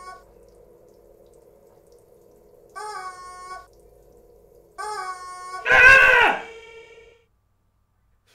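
A man's voice: three short pitched cries about two seconds apart, then a loud anguished scream about six seconds in, over a steady hum.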